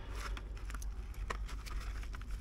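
Light scraping and a scatter of sharp little clicks as a plastic-sheathed engine wiring harness is handled and pulled with gloved hands, over a low steady hum.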